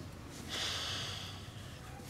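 A man's long breath out, a sigh lasting about a second that starts about half a second in.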